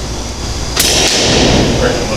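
A single shot from a custom 300 Blackout rifle fitted with a SilencerCo Hybrid 46M suppressor: a sharp crack about three-quarters of a second in, followed by about a second of hissing echo in the indoor range.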